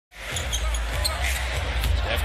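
Short intro music over a steady low rumble.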